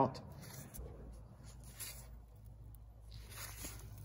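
Faint rustling and a few light clicks of gloved hands working at engine-bay wiring, over a low steady hum.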